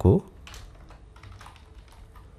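Computer keyboard being typed on: a quick run of light key clicks.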